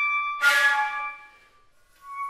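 Flute and clarinet duo playing held tones in a contemporary chamber piece. About half a second in, a loud, breathy accented attack cuts in and fades away within about a second, leaving a brief pause of near silence.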